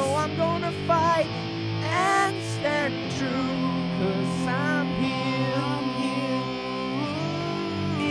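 Rock song playing: guitar over held low notes, with a melody line that bends up and down and settles on a held note near the end.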